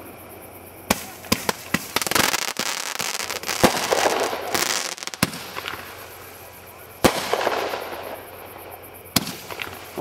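Consumer 1.4G fireworks going off: a quick run of small pops about a second in, then several loud sharp reports spaced a second or two apart as shots launch and burst, with a stretch of hiss between about two and five seconds in.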